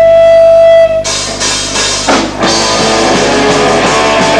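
Rock band playing live on electric guitars, bass and drums. A single note rings out held for about a second, then the full band comes in loud, with a brief break a little after two seconds before it carries on.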